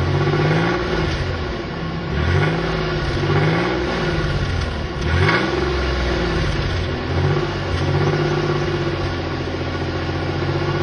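1991 Chevy Corsica's engine heard at the tailpipe, revved in about five short blips that rise and fall, the sharpest about five seconds in. It then settles to a steady idle for the last two seconds.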